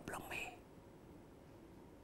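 A faint, soft trailing bit of voice in the first half second, then near silence.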